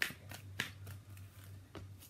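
A deck of tarot cards handled by hand, with the cards shuffled and one pulled out and laid on the spread: a string of quick papery flicks and snaps, the sharpest right at the start, over a low steady hum.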